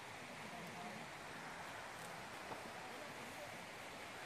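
Faint, steady outdoor hiss of forest ambience, with a few soft ticks and no distinct sound standing out.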